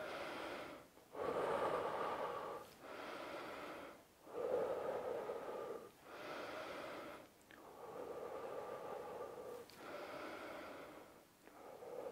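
A man breathing deeply and slowly in and out, about seven long breaths with short pauses between them, recovering after a set of push-ups.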